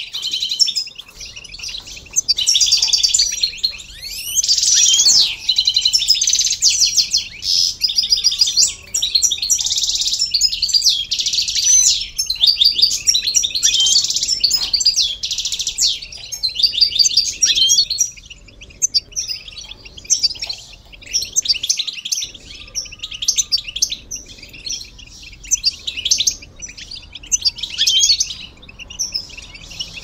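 A flock of European goldfinches chattering and singing together: quick overlapping twitters and liquid trills, almost unbroken for the first eighteen seconds or so, then in shorter, sparser phrases.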